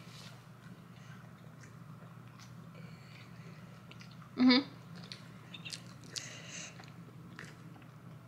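Faint chewing and mouth noises of someone eating a soft chocolate chip cookie, with a short closed-mouth "mm-hmm" of approval about halfway through.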